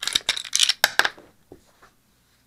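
Canik TP9SA pistol being handled while it is cleared: a quick run of sharp metallic clicks and clacks in the first second, then a couple of fainter clicks.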